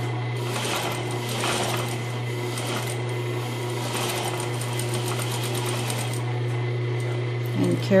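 Electric sewing machine running at a steady speed, stitching a small stitch length through layered cotton fabric and firm non-woven interfacing, with an even low motor hum.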